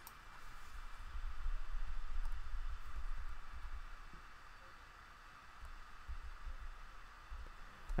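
Faint background room noise: a steady hiss with a low rumble that swells for a couple of seconds about a second in, with no distinct sound event.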